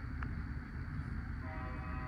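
Distant locomotive horn sounding a steady chord of several tones, starting about one and a half seconds in, over a low rumble.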